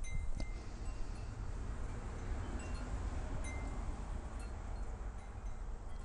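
A few short, faint high ringing tones at scattered moments, like small chimes, over a steady low rumble.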